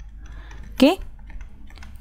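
Faint tapping and clicking of a stylus on a tablet screen as an equation is handwritten, over a steady low hum.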